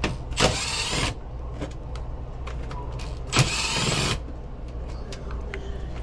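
Plastic bags and bedding rustling loudly in two bursts as they are shoved aside, over the steady low hum of an indoor air handler's blower running. The blower will not shut off because a burnt relay has a heat strip stuck on.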